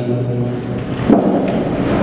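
A loud rushing, rumbling noise without pitch that swells for about a second and a half and cuts off abruptly.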